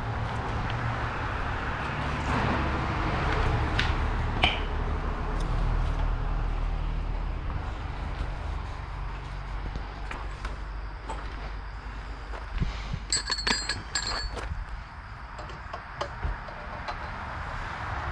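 A steady low machine hum. Near the end come several sharp metallic clinks of steel tools being handled.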